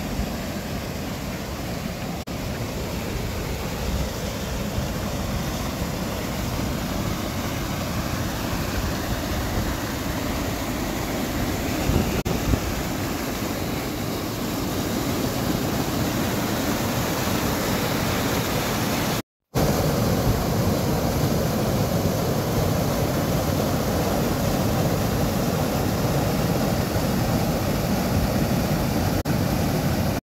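Mountain stream rushing over granite rock through a narrow channel and small waterfalls: a loud, steady rush of water. It breaks off for an instant about two-thirds of the way through and resumes slightly louder.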